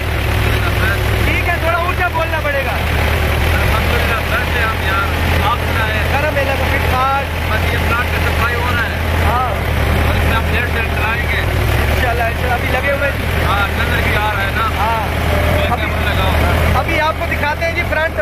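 Farm tractor engine running steadily under load while it levels a field, heard from the seat as a constant low drone.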